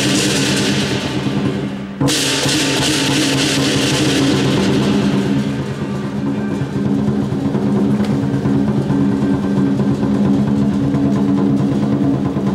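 Southern lion dance percussion band playing: the big lion drum beating, with cymbals and a gong. A loud cymbal crash comes in suddenly about two seconds in and fades over the next few seconds, over a steady low ringing.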